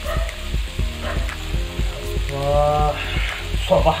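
Pieces of marinated fish frying in oil on a flat pan, sizzling steadily with many small crackles and pops.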